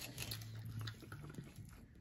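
Close-miked eating sounds: quiet chewing of pizza crust with small wet mouth clicks, and a short low hum in the first second.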